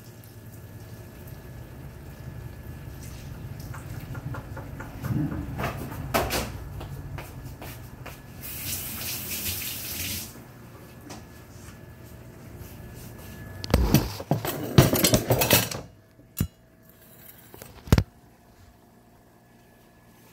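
Kitchen work sounds: a brief rush of running water, as from a tap, about eight seconds in, then a couple of seconds of loud clattering of pans or utensils, followed by two single sharp knocks.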